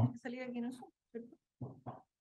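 Only speech: a voice talking quietly for about a second, then a few short faint fragments.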